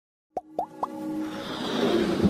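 Animated-logo intro sound effects: three quick pops about a quarter second apart, each a short upward blip, followed by a swelling whoosh that builds under musical tones.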